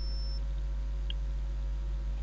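Steady low hum with faint hiss: the recording's background noise, with no distinct sound event.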